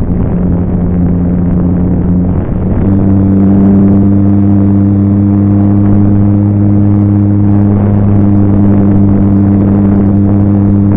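RC model airplane's engine running steadily, heard up close from a camera mounted on the plane. It drones on one pitch, and about three seconds in it grows louder and slightly higher as the throttle is opened, then holds.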